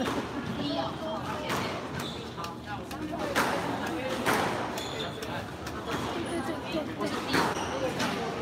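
Squash ball being struck by rackets and hitting the court walls during a rally: a series of sharp knocks a second or two apart.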